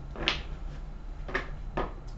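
Deck of tarot cards being shuffled by hand: three short papery swishes, about a quarter second in, past the middle and near the end.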